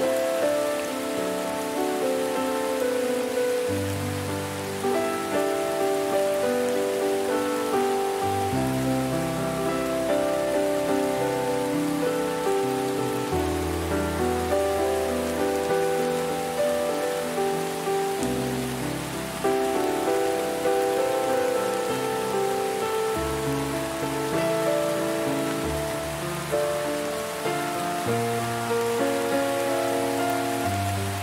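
Steady rain mixed with calm, slow relaxation music. The music has soft sustained notes over bass notes that change every few seconds.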